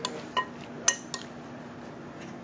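A metal spoon clinking against a glass mixing bowl while stirring: four short clinks in the first second or so, the third the loudest. A faint steady hum sits underneath.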